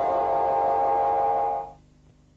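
The final chord of an advertising jingle, held as several steady notes and then cut off about one and a half seconds in.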